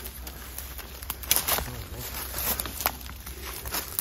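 Footsteps pushing through dense undergrowth: leaves and branches rustling and brushing past, with scattered twig snaps and one sharper crack about a second in.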